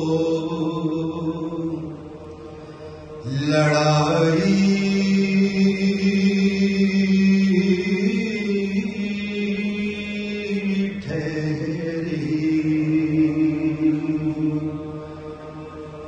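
Voices chanting a Muharram salam (noha) in long, drawn-out held notes. The line breaks off about two seconds in, resumes about a second later, and fades again near the end.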